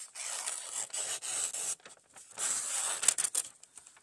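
The factory edge of an Ozark Trail axis-lock folding knife slicing through a sheet of grocery-flyer paper with a papery hiss. It makes a long cut of about two seconds, then a second shorter pass after a brief pause. The edge is cutting cleanly: it is sharp.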